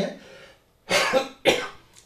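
A man coughs twice, two short coughs about half a second apart, close to the microphone.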